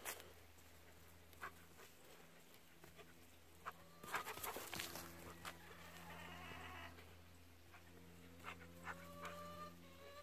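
Faint thuds and rustles of paws and footsteps on dry grass and soil as golden retrievers run about, with a few short, thin whining calls and a low steady hum underneath.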